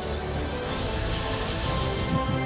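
Gama iQ Perfetto hair dryer switched on: its brushless motor whine climbs steeply in pitch over about a second as the airflow rushes up to full speed, under background music.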